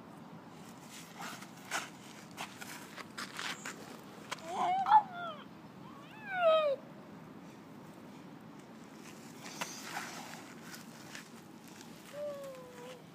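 Weeds being torn out of dry, gritty soil by hand, heard as scattered scratching and crunching. Two short, falling vocal cries from a young child about five and six and a half seconds in are the loudest sounds.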